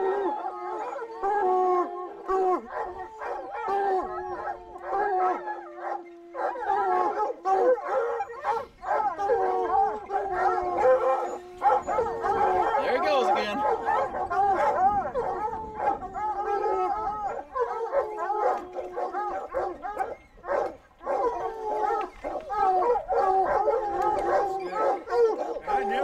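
A pack of lion hounds baying and howling together, many voices overlapping, with long drawn-out howls held for several seconds.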